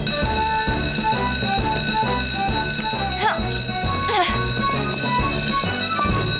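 Fire station's twin-gong electric alarm bell ringing without a break, sounding an emergency call-out, over background music.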